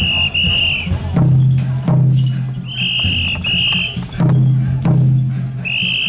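A large hand-held drum struck twice, each beat ringing low, then two short shrill whistle blasts, the pattern repeating about every three seconds. Lighter clicks and taps sound between the beats.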